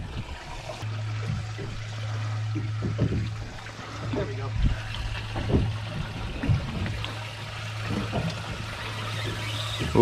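Fishing boat ambience: a steady low hum that comes in about a second in, with water trickling and sloshing around the hull and a few soft knocks.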